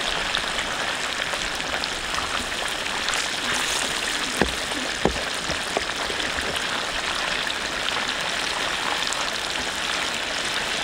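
Fish steaks deep-frying in hot oil, a steady sizzle with two sharp pops about four and five seconds in.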